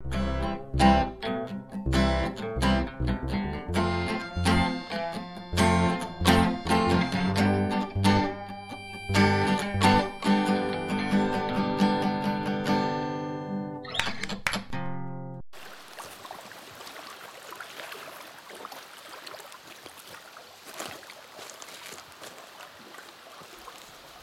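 Instrumental music of plucked acoustic guitar with a low bass line, stopping abruptly about two-thirds of the way through. After it, only a quiet steady outdoor background noise remains.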